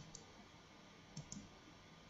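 Faint computer mouse clicks over near silence: two quick pairs of clicks, one at the start and one about a second later.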